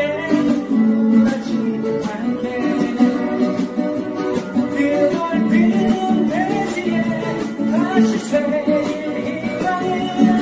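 Steel-string acoustic guitar strummed in an upbeat rock rhythm, with a voice singing over it.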